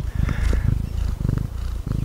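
Domestic cat purring: a steady, low, rapidly pulsing rumble.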